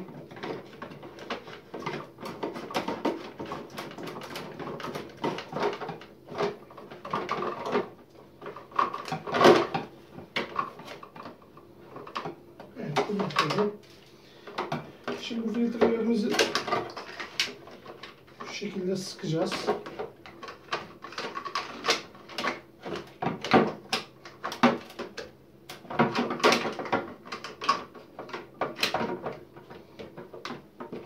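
Plastic clicks and knocks from the filter housings of a reverse osmosis water purifier being handled and screwed back on with a housing wrench, mixed with a voice at times.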